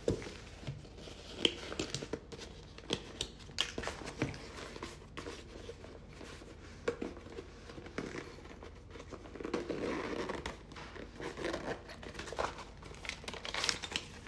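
A soft nylon carrying case being handled and unpacked: rustling and crinkling with scattered sharp clicks and knocks. Paper crinkles near the end as a folded instruction sheet comes out.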